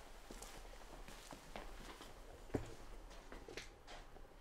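Faint, irregular footsteps and small knocks in a quiet room, with one louder thump about two and a half seconds in.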